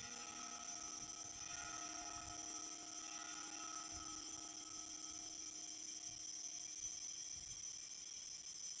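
Altar bells ringing on without a break, a faint, high metallic ringing that marks the elevation of the host at the consecration.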